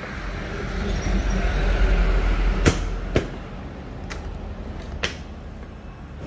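Rustle and low rumble of hands and camera handling, then four sharp plastic-and-metal clicks and knocks as the Honda Vario 125 scooter's seat is unlatched and lifted open.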